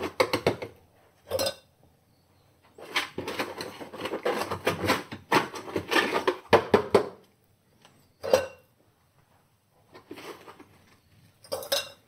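Sodium hydroxide (caustic soda) being scooped out of a plastic tub with a plastic scoop and tipped into a glass beaker: the solid pieces rattle and clink against plastic and glass in several short bursts with brief pauses between them.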